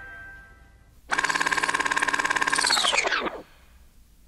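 A fast-pulsing buzz starts about a second in, runs steadily for about two seconds, then slides down in pitch and stops.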